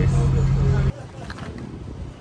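Tour boat engine running with a steady low drone under a voice finishing a word; it cuts off abruptly about a second in, leaving much quieter wind and water noise.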